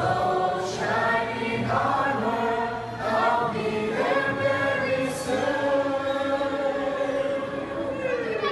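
A group of voices singing together, ending on one long held note from about four seconds in that falls away at the end.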